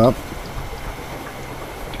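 A 12 V HHO electrolyser fizzing steadily as its current is turned right up: hydrogen-oxygen gas bubbling out of a weak sodium hydroxide electrolyte, with a faint low hum underneath.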